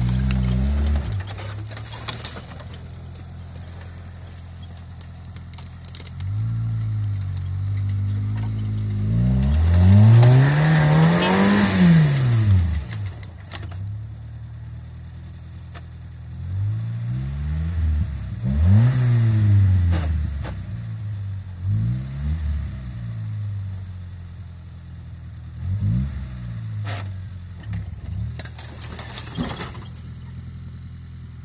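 Suzuki Vitara engine revving under load as the 4x4 tries and fails to climb a steep dirt bank. One long, loud rev rises and falls about ten seconds in, followed by several shorter revs with lower running between them.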